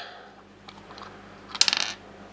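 A small metal thumbscrew being twisted out of the end of an aluminium SSD enclosure: faint ticks, then a quick run of sharp metallic clicks near the end as the screw comes free.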